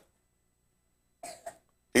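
A pause of near silence, then a brief cough in two short bursts a little past the middle. A man's voice starts right at the end.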